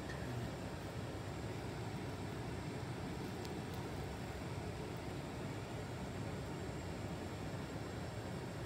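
Steady low background noise, even throughout, with no distinct knocks or rustles standing out.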